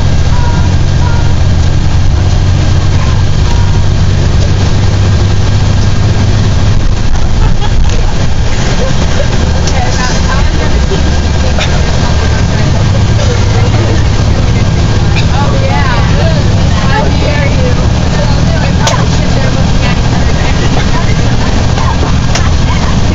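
School bus engine and road noise heard from inside the cabin: a loud, steady low drone that eases off in the middle and builds again. Faint voices of passengers sit under it in the later seconds.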